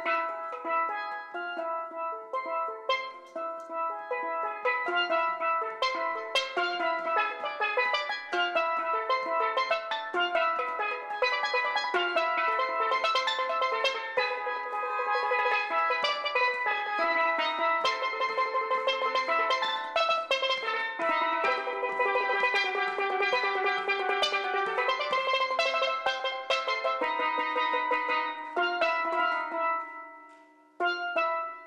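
A single steelpan played solo, with quick runs of struck, ringing notes and rapid repeated strikes on the same note.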